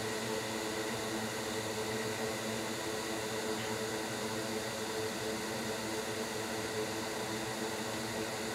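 Steady machine hiss with a faint hum under it.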